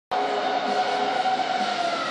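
Sustained droning tones at several pitches together, starting abruptly and gliding slowly downward in pitch: the opening of a promo soundtrack played over a hall's loudspeakers.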